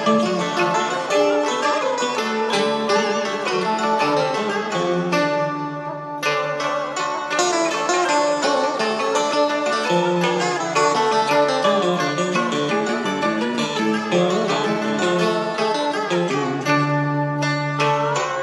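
Instrumental intro of a tân cổ backing track: a plucked-string melody over steady accompaniment, with a brief break about six seconds in, before the singing begins.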